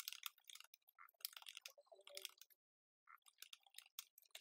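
Faint computer keyboard typing: a run of quiet keystroke clicks, with a short pause a little before three seconds in.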